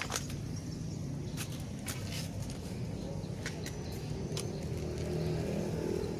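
A steady low motor hum, with a few short clicks scattered through it.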